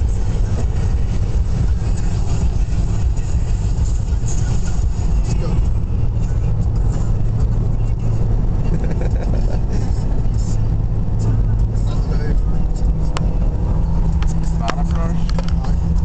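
Steady engine and road rumble inside a car's cabin at motorway speed.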